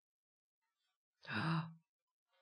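A man's single short breathy sigh with a brief low voiced sound in it, a little over a second in and lasting about half a second.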